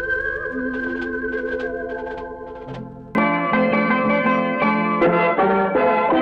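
1960s Tamil film song music: sustained, wavering notes fade slowly, then about three seconds in the sound cuts abruptly to a louder, busy instrumental passage of the next song.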